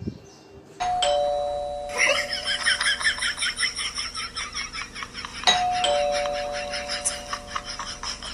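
Two-tone doorbell chime, ding-dong: a higher note falling to a lower one, rung twice about five seconds apart. A rapid, busy patter of higher sounds runs underneath from about two seconds in.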